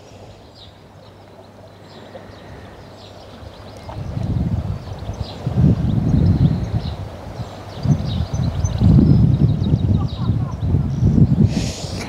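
Wind buffeting the microphone outdoors: a low rumble that starts about four seconds in and comes and goes in gusts. Faint bird chirps sound in the background throughout.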